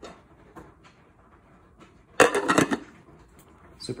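Glass lid set onto a Crock-Pot slow cooker's ceramic crock: a short burst of clinks and rattles a little over two seconds in, after a few small handling knocks.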